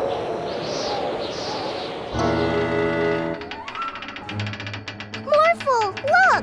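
Cartoon wind-gust sound effect, a breathy whoosh lasting about two seconds, followed by background music: a held chord, then short plucked notes, with sliding pitched sounds near the end.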